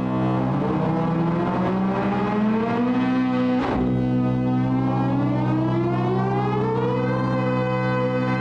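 Sonicsmith Squaver P1 audio-controlled synth voiced from an electric guitar: a held synth note slides slowly upward in pitch twice, swept by an expression pedal on the pitch CV input, with a short break between the slides. Steady lower held notes sound under it.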